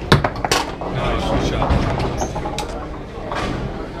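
Foosball table in play: a few sharp knocks near the start as the ball is struck by the plastic foosmen and the rods clack, over the chatter of voices in the room.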